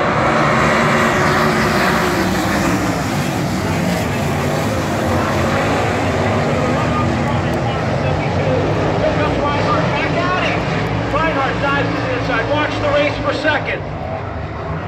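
A field of 410 sprint cars racing at full throttle on a dirt oval, the many engines blending into one loud, continuous sound whose pitch rises and falls as the cars pass. The cars are back under green after a caution. Voices rise over the engines near the end.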